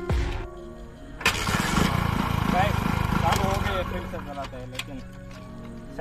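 Hero motorcycle's single-cylinder engine starting on hydrogen gas from a homemade caustic soda and aluminium foil generator: it catches about a second in and fires rapidly for a few seconds before getting quieter. It starts but has too little power to ride.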